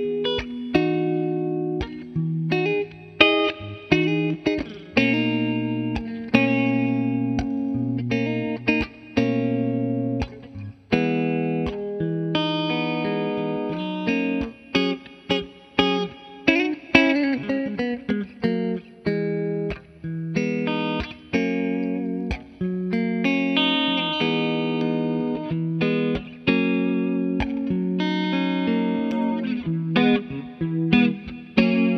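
Electric guitar, a Gibson Les Paul, played through a Bondi Effects Squish As compressor pedal into a Fender Twin Reverb amp: chords and single-note lines with sharply picked attacks and a few short breaks, with some bent notes in the middle.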